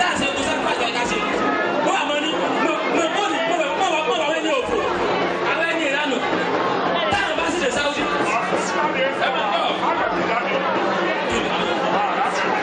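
A man's voice through a stage microphone and PA, over dense crowd chatter.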